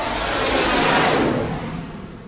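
Whoosh sound effect: a rush of noise that starts suddenly, swells for about a second, then fades away.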